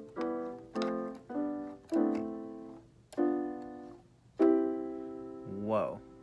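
Casio LK-230 electronic keyboard in a piano voice playing a run of six three-note triad chords, the same hand shape moved step by step along the scale. The chords come about every half second at first, then slower, and the last is held longest.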